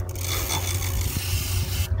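WD-40 aerosol spray hissing steadily onto a rusty bicycle chain, cutting off just before the end.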